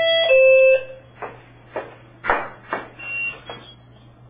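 An electronic doorbell chime, a higher tone dropping to a lower one (ding-dong), in the first second. Several soft thumps about half a second apart follow.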